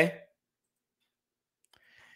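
A man's spoken "okay" trailing off, then silence, with faint mouth noises near the end just before he speaks again.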